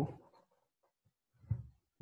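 A single short, soft keystroke on a computer keyboard about one and a half seconds in, in an otherwise quiet small room, committing a typed spreadsheet entry.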